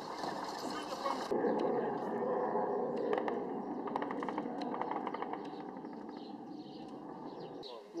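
Outdoor ambience with indistinct background voices and a run of faint clicks or taps in the middle; the background sound changes abruptly about a second in and again near the end.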